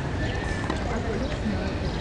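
Background chatter of spectators with a steady low rumble on the microphone, and a few faint knocks.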